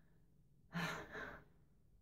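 A woman's breathy sigh, a short out-breath in two quick pushes about a second in.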